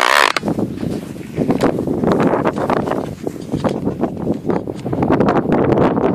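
Wind buffeting the microphone of a hand-held camera, with rustling and knocks from the camera being handled. A brief, loud scrape comes right at the start.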